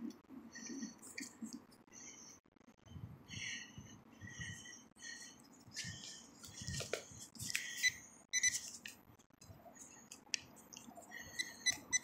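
Faint short electronic beeps from a metal-detecting pinpointer, sounding on and off at a steady pitch as it passes over a target. Underneath is the soft scraping and crumbling of soil as a gloved hand sifts through the dug dirt.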